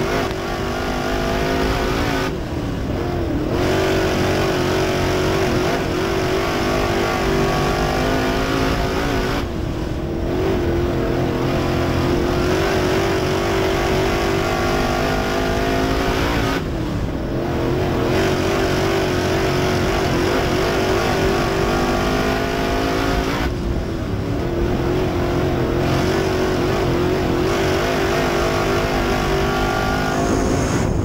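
Crate late model's V8 race engine at racing speed, heard from inside the car. It runs hard down the straights and lets off four times, about every seven seconds, for the corners. Each time it climbs back up in pitch as it accelerates out.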